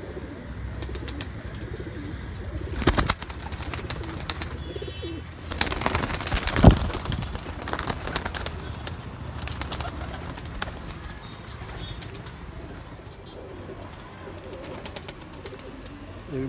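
Domestic pigeons cooing in a wire loft, a steady low murmur. Two louder bursts of noise break in, about three seconds in and about six seconds in.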